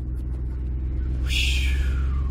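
Steady low rumble of a 2007 Dodge Nitro's engine and drivetrain, heard from inside the cabin as the SUV rolls slowly. A brief hiss comes about a second and a half in.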